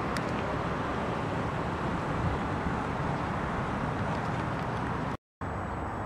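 Steady outdoor city background noise of distant road traffic, which drops out completely for a moment near the end.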